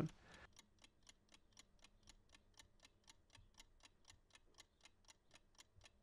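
Faint, even ticking of a clock-style timer sound effect, about four ticks a second, marking thinking time while a chess puzzle is posed.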